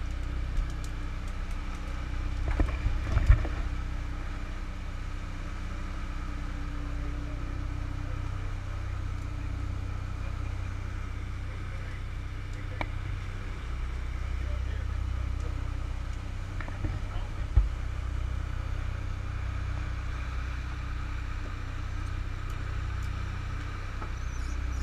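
Sportfishing boat's inboard engines running at a steady trolling speed, a low drone with water rushing in the wake. There are a few sharp knocks, a cluster about three seconds in and one more a little past the middle.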